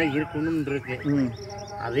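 A man speaking, with talk through most of the two seconds and a lull in the second half.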